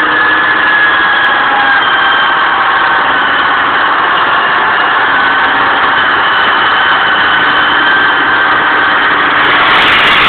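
A new 8274-type electric winch on a Land Rover Defender 90 hauling the vehicle up a steep bank under load with no help from the wheels. The winch gives a steady, loud whine over the running engine.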